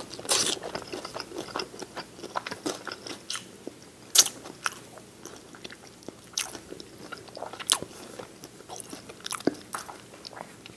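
Crispy fried chicken wings in lemon pepper butter sauce being bitten and chewed: irregular crunchy bites of the fried skin with wet chewing between them, the sharpest crunch about four seconds in.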